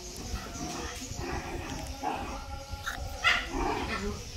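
Short high-pitched animal calls, whimpering and yipping, the loudest a brief sharp one about three seconds in.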